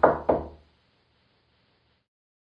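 Two quick knocks about half a second apart, each dying away fast.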